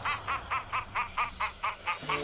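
A cartoon villain's rapid, high-pitched cackling laugh: a run of short 'ha' syllables, about six a second.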